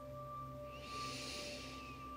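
Soft ambient background music of steady sustained tones, with a faint breathy hiss rising and fading about a second in.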